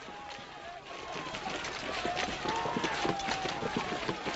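A group of soldiers with voices, footsteps and clattering gear, growing louder about a second in.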